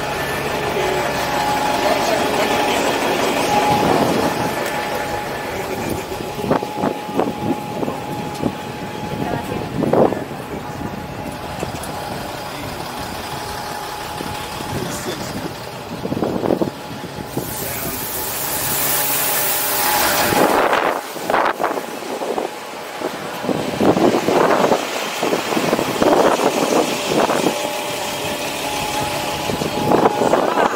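Double-decker tour bus engine running close by, with people talking in the background. A loud hissing rush comes about seventeen to twenty seconds in.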